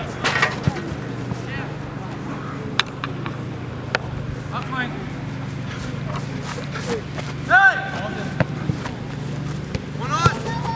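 Outdoor soccer match sound: distant voices calling on the field, with one loud shout about seven and a half seconds in. There are a few sharp knocks of the ball being kicked, over a steady low hum.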